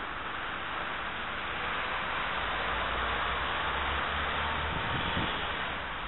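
Outdoor street noise: a steady hiss of passing traffic with a low rumble and wind on the microphone, swelling slightly through the middle.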